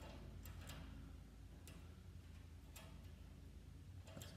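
Near silence with a few faint, irregular metallic clicks: small steel parts of a car lift's threaded safety-release rod being handled and fitted into an eyelet by hand.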